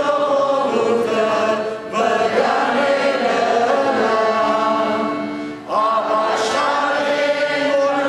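Armenian liturgical chant sung in slow, sustained phrases, with short breaks for breath about two seconds in and again near six seconds.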